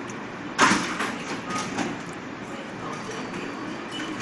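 Crisp deep-fried kachori crust crunching: one sharp crunch about half a second in, then a few lighter crackles over the next second.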